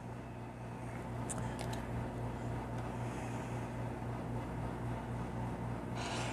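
Steady low hum of a room air conditioner, with a few faint clicks about a second and a half in.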